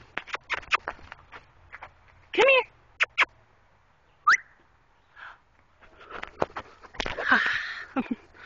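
A person making sharp clicking and kissing sounds to get a dog's attention, with a short wavering squeal about two and a half seconds in, a quick rising whistle a little after four seconds, and a louder burst of voice near the end.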